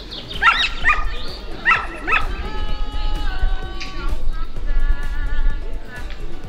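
A dog gives four short, high barks in the first two seconds, over background music with held notes.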